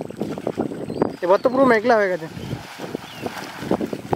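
Splashing and sloshing of river water as a person wades through it, with a voice calling out in the middle.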